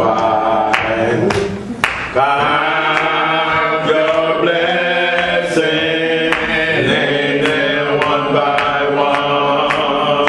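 A slow hymn sung in long held notes, a man's voice leading with other voices joining in.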